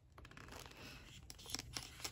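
Faint crinkling of a paper pad's cellophane wrapper being cut open with scissors, with a few soft clicks in the second half.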